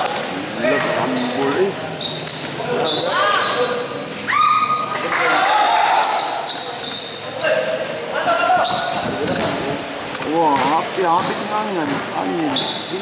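Indoor basketball game: the ball bouncing on the court, sneakers squeaking in short high squeals, and players calling out, all echoing in a large gym.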